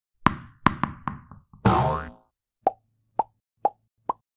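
Intro sound effects for an animated logo. A quick run of about four sharp pops comes first, then a swish with falling pitch about two seconds in, then three short, evenly spaced pops near the end.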